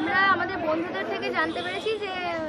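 People talking, a fairly high-pitched voice over background chatter.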